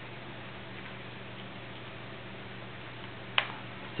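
Faint steady electrical hum and hiss, with one sharp click a little before the end as a hard cured clear-cast resin star is handled and knocks against a hard surface.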